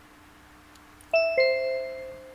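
A two-note ding-dong chime about a second in, a higher note and then a lower one a quarter second later, both ringing on and fading slowly; it marks the start of a recorded listening track.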